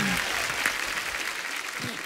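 Studio audience applauding, dying away over about two seconds.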